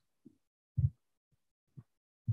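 A few short, low thumps against otherwise dead silence, the clearest a little under a second in and two fainter ones around it.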